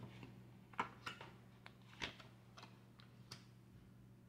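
Faint clicks and taps of tarot cards being pulled from a deck and laid down on a wooden table, about six soft, separate clicks spread over a few seconds.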